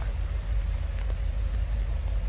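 Steady low outdoor rumble with an even hiss above it and no distinct event, typical of wind on the microphone at an open-air recording.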